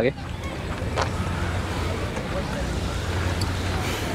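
Steady outdoor background noise: a constant low hum under an even hiss, after a voice stops at the very start.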